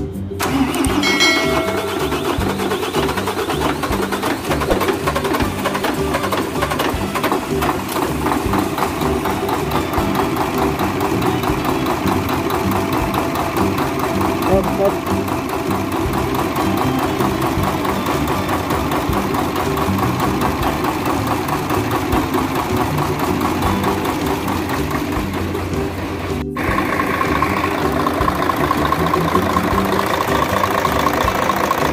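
Mercedes-Benz OM 501 V6 diesel engine starting up after a top overhaul with a new cylinder head gasket, then running steadily at idle. There is a short break near the end, after which it runs a little louder.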